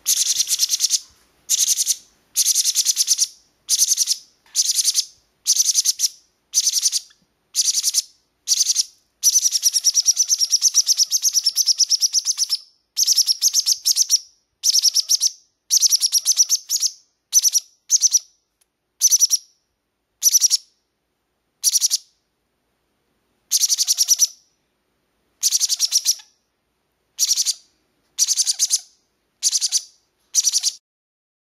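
Baby green-cheeked conures, three to four weeks old, giving begging calls to be fed: a string of short raspy calls about one a second, with one longer unbroken run a little before the middle.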